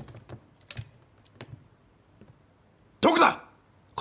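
A few faint, separate clicks, like small handling noises, in the first couple of seconds. About three seconds in comes a short, loud burst of a person's voice.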